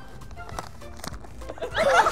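Soft handling of a gift box and torn wrapping paper, over background music, then, about one and a half seconds in, a sudden burst of high, quavering laughter.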